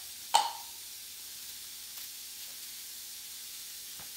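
A sharp click with a short ringing tail from a metal aerosol can of prep spray being handled, followed by a faint steady hiss.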